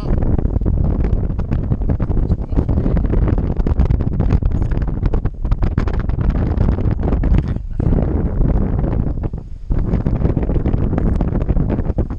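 Loud wind rushing over the camera microphone in paraglider flight, with the level dipping briefly a few times, around five, seven and a half and nine and a half seconds in.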